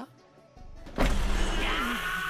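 A sound effect in the anime's soundtrack, over music: after a near-quiet moment, a steady buzzing sound with a fast low pulse starts suddenly about a second in. A character is wondering what the sound is.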